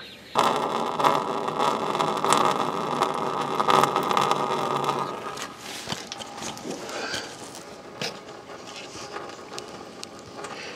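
Coolant draining from a car's radiator drain into a pan below, a steady rush that starts abruptly about half a second in and drops away after about five seconds, followed by fainter clicks and handling noises.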